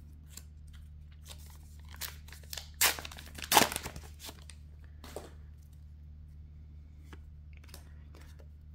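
A Star Wars: Unlimited booster pack wrapper being torn open by hand: two sharp tears a little under a second apart near the middle, with rustling and crinkling of the wrapper before and after.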